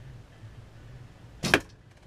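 Win&Win recurve bow shot: the string is released from full draw with one short, sharp snap about one and a half seconds in.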